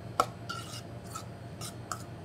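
A utensil scraping and clinking against a stainless steel mixing bowl as cooked couscous is stirred into an oily garlic dressing: a handful of irregular scrapes, with a sharper click shortly after the start.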